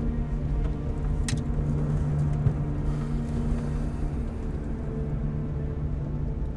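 Steady low engine and road rumble inside a moving car's cabin, with soft sustained background music over it.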